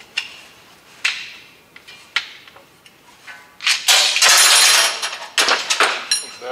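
Metal tube-bender parts clinking and knocking as they are handled in a plastic carrying case: a few sharp clinks with a short ring, then a louder stretch of rattling about four seconds in, and more clicks near the end.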